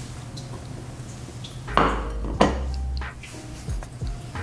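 A plate set down on a hard floor: two sharp knocks about half a second apart, a little under two seconds in.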